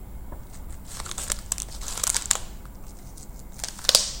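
Plastic bubble wrap around a phone crinkling as it is handled, in irregular bursts that are loudest about two seconds in and again just before the end.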